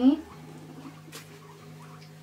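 Guinea pigs milling about in a pen, making faint small squeaks and ticks. A brief human voice sound comes right at the start.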